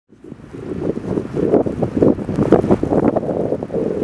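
Strong wind buffeting the microphone in irregular gusts outdoors in snow.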